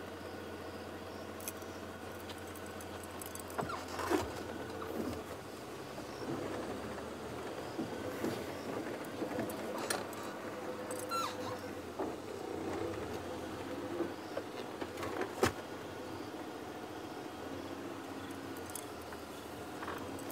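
Safari game-drive vehicle's engine running steadily as it creeps along behind a walking leopard, with a few sharp clicks and knocks, the loudest about 15 seconds in.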